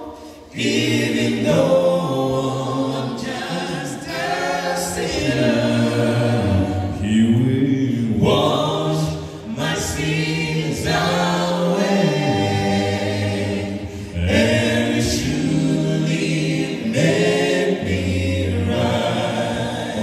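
Male a cappella gospel quintet singing in close harmony, voices only with no instruments. The singing breaks off briefly right at the start, then carries on unbroken.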